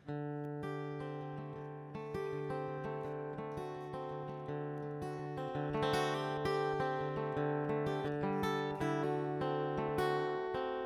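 Solo acoustic guitar playing an instrumental passage: picked notes ringing over a held low note, growing louder about six seconds in.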